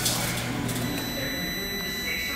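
Microwave oven running with a CD inside sparking: a steady electrical hum with faint crackling from the arcing disc. The hum cuts off about a second in.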